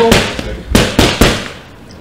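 Boxing gloves striking focus mitts in a quick combination, several sharp slaps in the first second or so.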